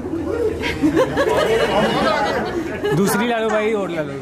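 Several people talking at once: overlapping chatter of a group of guests, with no other sound standing out.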